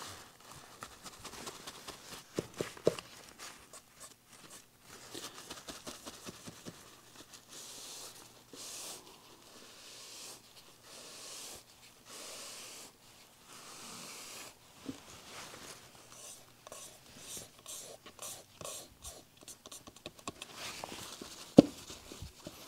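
Paper towel rubbing and scuffing over a wet water-slide decal on a gessoed wooden panel, soft and irregular, as the decal is pressed flat and bubbles are worked out from under it. A sharp click near the end.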